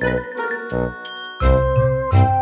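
Background music with chiming, bell-like notes; a heavier beat comes in about one and a half seconds in.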